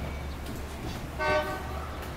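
A short, steady horn toot lasting about a third of a second, about a second in, over a low steady hum.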